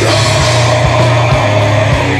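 Heavy metal band playing: heavily distorted electric guitars and bass hold a sustained chord, with a few drum hits.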